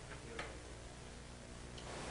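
Quiet room tone in a lecture hall: a faint steady low hum with two weak clicks, about half a second in and near the end.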